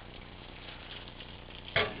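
Faint crackling and sizzling from a meat fatayer baking on a hot tray in an open oven, over a low steady hum.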